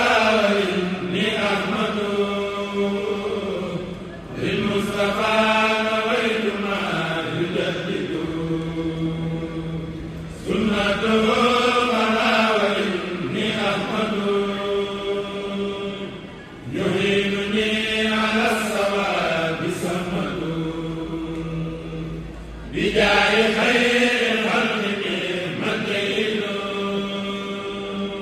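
A kourel of men's voices chanting a Mouride xassida together, without instruments. The melody runs in long phrases of about six seconds, each broken by a short pause for breath.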